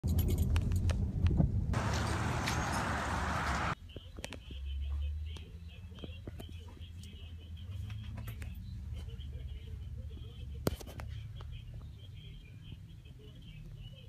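Rain on a car, heard from inside it with a low rumble and clicks, then about two seconds of loud hissing rain that cuts off suddenly. After that comes quieter indoor room tone, with a faint hum and scattered handling clicks.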